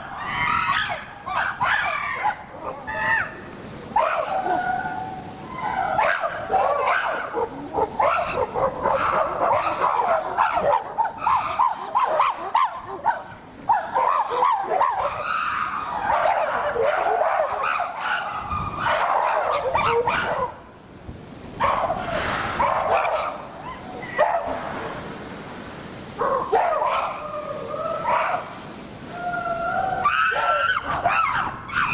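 Chimpanzees calling and shrieking almost without pause, several voices overlapping, with only a brief lull about two-thirds of the way through.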